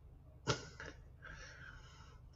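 Faint sounds in a pause between a man's sentences: a short click about half a second in, then a soft intake of breath before he speaks again.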